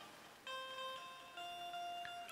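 Soft instrumental background music in a gap in the speech: a few quiet held notes come in about half a second in and move to a new note about a second later.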